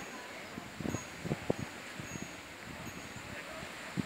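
Wind stirring the trees' leaves and buffeting the microphone, with a few short knocks about a second in and a faint high tone that comes and goes.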